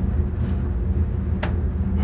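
Steady low hum of room background noise, with one faint short click about one and a half seconds in.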